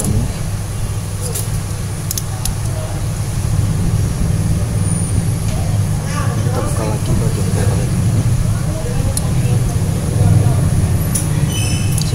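A steady low rumble throughout, with a few light clicks as a metal shield cover is pried off a phone's circuit board.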